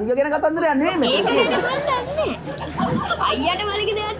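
Speech: several voices talking over one another, with laughter from the studio audience.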